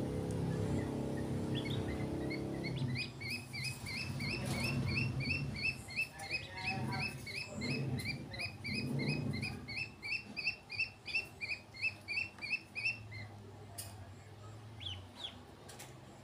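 Ducklings peeping: an even run of short, high chirps, about three a second, starting a few seconds in and stopping shortly before the end. Under it, a low steady hum in the first few seconds, then uneven low-pitched sounds.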